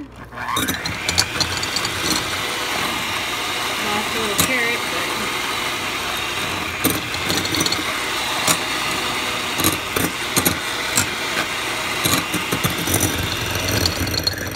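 Proctor Silex electric hand mixer running, switched on about half a second in, its beaters tearing through hot cooked chicken breasts to shred them. Frequent sharp clicks and knocks sound as the metal beaters strike the glass bowl.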